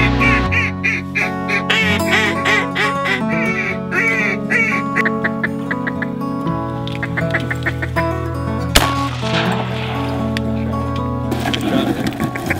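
Mallard duck call blown in a run of quacks over background music with steady low notes; the quacks come thick for about five seconds, then thin out. A single sharp bang sounds near nine seconds in.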